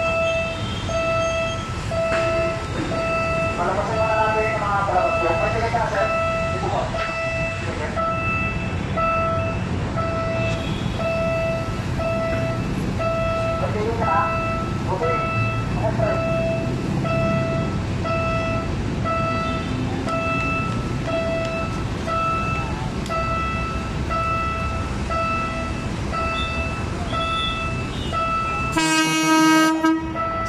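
A PNR diesel commuter train approaching and pulling into a station, its low rumble building through the middle, then a loud horn blast near the end. A pulsing beep repeats throughout, and people talk briefly twice.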